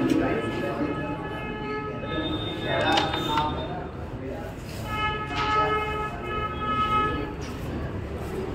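A carrom striker is flicked across the board and clacks into the coins about three seconds in, over background voices. A long, steady, horn-like high tone sounds twice, once early and again from about five to seven seconds.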